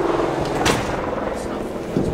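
Century-old TITAN traction freight elevator with a chain-link cage: one sharp clank about two-thirds of a second in, over a steady mechanical hum.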